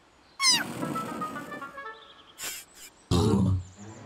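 Cartoon sound track: a high, squeaky, animal-like cartoon cry about half a second in, then a short run of stepping musical tones. A brief noisy burst follows, and a second loud cry comes just after three seconds.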